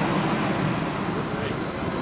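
Four-engine Airbus A380 jetliner with Engine Alliance GP7200 turbofans flying overhead in a steep banked turn, its engines making a loud, steady noise.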